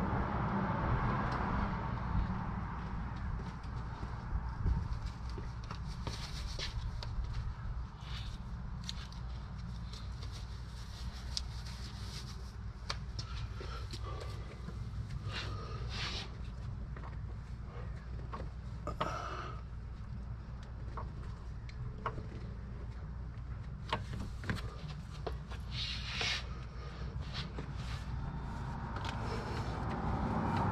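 Scattered clicks and rustles of hoses and fittings being handled in a car's engine bay, over a steady low hum.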